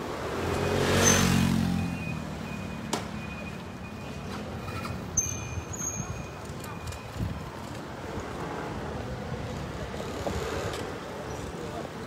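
Street traffic: a motor vehicle passes close by, swelling to its loudest about a second in and fading away, then a steady street hum with a couple of sharp clicks.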